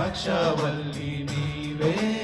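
Men singing a Telugu Christian worship song into microphones, holding long sustained notes over musical accompaniment.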